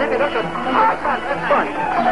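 Several people's voices shouting and chattering over each other in a scuffle, with a held musical note coming in near the end.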